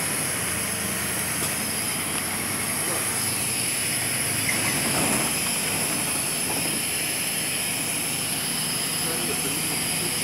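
City bus in motion, its engine and road noise heard steadily from inside the passenger cabin.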